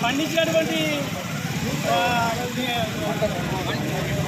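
A person speaking in Telugu, with a steady low rumble of background noise underneath.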